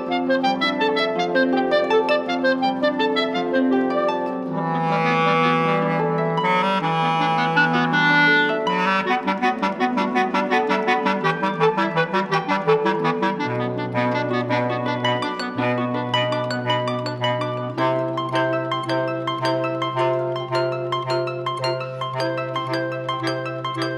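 Clarinet, bass clarinet and harp playing together in a slow chamber piece: the clarinets hold long melodic notes over a steady run of plucked harp notes. About halfway through, the bass clarinet settles onto long, low sustained notes.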